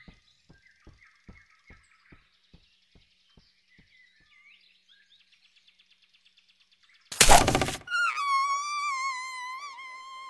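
Cartoon forest soundtrack. Faint bird chirps run over a series of soft, evenly spaced taps, about two or three a second, which fade out. About seven seconds in comes a sudden loud rushing hit, followed by a long, high, wavering whistle-like cry.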